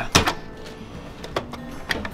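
Empty VHS tape rewinder's small motor running, speeding up and slowing down, with sharp clicks from its buttons being pressed: one just after the start and two near the end.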